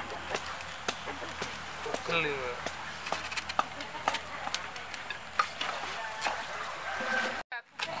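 Machete blade cutting and scraping along a fresh banana leaf stalk: irregular light clicks and snicks. A brief faint voice about two seconds in, and the sound drops out briefly near the end.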